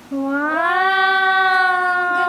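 A person's voice holding one long sung-out note, rising in pitch about half a second in and then held steady.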